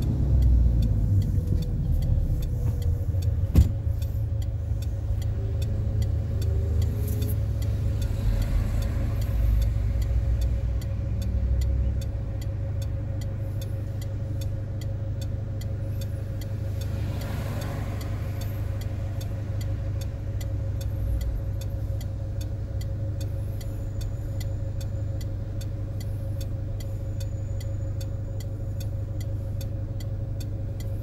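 Car running, heard from inside the cabin: engine and road rumble as the car slows, then a steadier, quieter idle while it waits, stopped. A fast regular ticking runs over it from about a quarter of the way in, and there is a single sharp knock a few seconds in.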